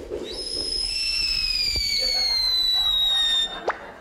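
A long falling whistle sound effect for a thrown shot put flying through the air, gliding slowly down in pitch for about three seconds. It cuts off suddenly, and a short, quick upward whistle follows.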